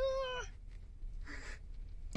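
A person's short, high, whiny vocal sound, about half a second long, rising then falling in pitch. It is followed by the low steady hum of the moving car's cabin.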